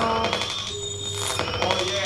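Sparse electronic music from a live experimental band: a few steady electronic tones held over faint clicks and noise.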